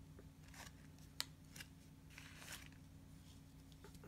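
Faint rustles and light clicks of a stack of mini baseball cards being handled and flipped through by hand, over a low steady hum.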